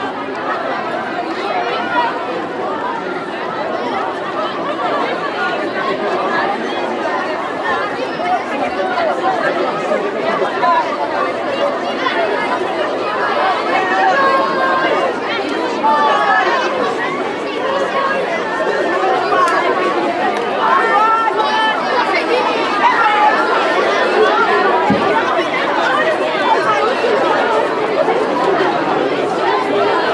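Crowd of schoolchildren chattering, many voices talking over one another in a steady hubbub.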